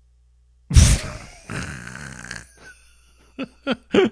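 A man bursts out laughing with a sudden loud outburst about a second in, followed by breathy laughter that fades, then a few short laughs near the end. It is held-back laughter finally breaking out: a build up of all the ones he couldn't laugh at.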